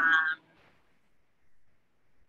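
A woman's brief hesitant vocal sound, a short hum of thought, at the very start, then near silence.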